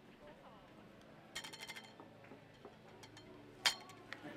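Metal cups clinking against each other as they are tossed and caught: a quick run of ringing clinks about a second and a half in, then one sharp, louder clink near the end.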